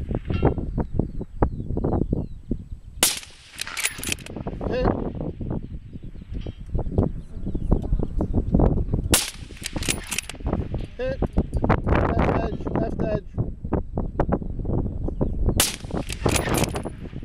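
Three shots from a suppressed .308 bolt-action rifle, each a sudden sharp report, about six seconds apart.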